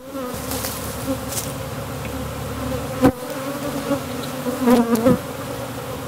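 Honey bees buzzing around an open hive: a steady hum, with single bees flying close past now and then. Two sharp knocks break in, about three seconds in and again about five seconds in.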